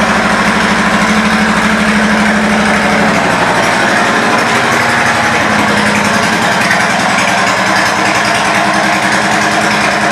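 2007 Suzuki Boulevard C90T's V-twin engine idling steadily through its aftermarket Cobra exhaust pipes, with an even run of firing pulses.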